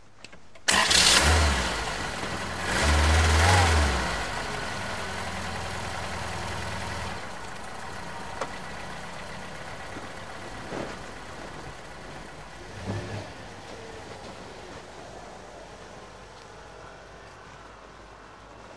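Range Rover Sport HSE engine starting with a sudden catch about a second in, revving up briefly around three seconds, then settling to a steady idle that slowly fades as the car pulls away.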